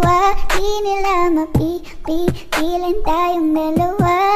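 Filipino pop song playing as background music: a high voice sings long held notes over a steady drum beat.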